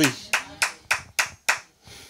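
Hand claps: five sharp, evenly spaced claps, about three a second.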